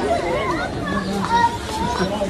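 Children's voices and chatter from other people, several voices overlapping, some high-pitched.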